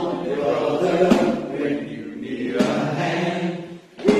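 A group of voices singing a hymn together, with a strummed acoustic guitar.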